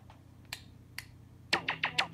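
A pause in a song: two finger snaps about half a second apart, then the track's beat and music come in about a second and a half in.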